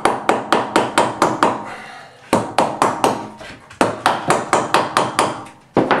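Hammer blows nailing a wooden build-out block to the wall framing, about four sharp strikes a second in three quick runs with short pauses between, and one more strike near the end.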